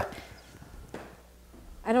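A few soft footsteps on a workshop floor, with a faint knock about a second in.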